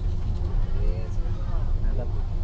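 Steady low rumble of a bus's engine and tyres on a wet road, heard from inside the cabin, with faint talking over it.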